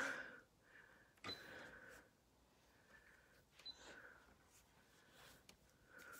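Near silence: room tone, with two faint clicks, about a second in and again a little over three and a half seconds in.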